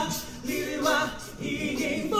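A cappella vocal group singing a Mandarin song in harmony, with several voices moving over a low sustained bass voice and no instruments.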